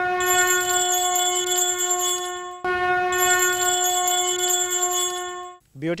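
Programme title sting: a loud, steady horn-like tone sounded twice, each blast about three seconds long with a brief break between, over a high shimmer.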